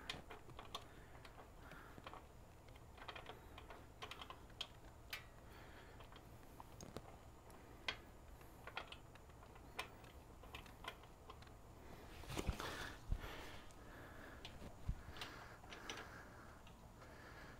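Faint, irregular clicks and scrapes of a transmission dipstick cap being turned by hand against the case of a Harley six-speed, its threads not catching, with a denser run of clicks about three-quarters of the way through.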